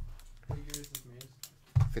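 A few sharp clicks and scrapes from a blade cutting open a cardboard Panini Prizm blaster box of basketball cards, with a voice talking under them.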